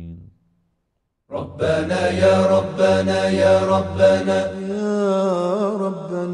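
After about a second of silence, a chanted Arabic supplication begins about a second in: a voice sings long, held notes that waver and bend in pitch.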